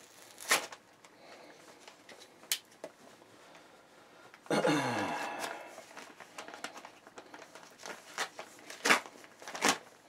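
A parcel's packaging being opened by hand: paper or plastic crinkling and rustling, with sharp crackles now and then and one louder ripping tear, about a second long and falling in pitch, about halfway in.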